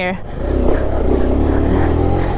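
Small single-cylinder mini motorcycle engine picking up revs about half a second in and then running steadily under load as the bike rides along.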